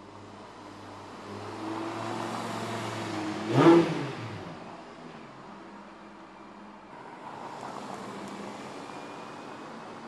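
Audi R8 V10 engine building as the car approaches, then passing close by about three and a half seconds in at its loudest, with the pitch dropping as it goes away. Softer engine noise rises again near the end.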